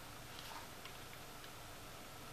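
Faint handling noise: a few light clicks and ticks from an iPhone 5 in a hard plastic case shell being turned in the hands, a small cluster about half a second in, then single ticks.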